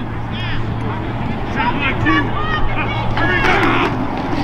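Several voices on a football field shouting and calling over one another in short, unclear yells as a play starts, over a steady low hum that cuts off near the end.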